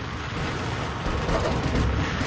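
Hurricane wind roaring across a microphone: a steady rush of noise with a deep rumble, growing a little louder toward the end.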